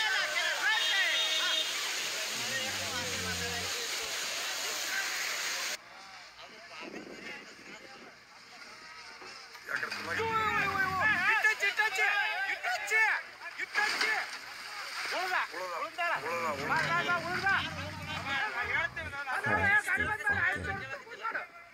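Muddy floodwater rushing loudly, with people's voices shouting over it; the rushing cuts off abruptly about six seconds in. After that, mostly voices talking and calling out.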